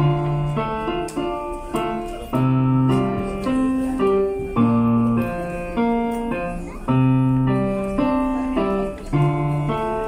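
Solo digital piano playing a slow piece: sustained chords and a melody over a low bass note struck about every two seconds.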